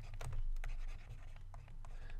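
Stylus scratching and ticking on a pen tablet while words are handwritten, with several short ticks in the first second.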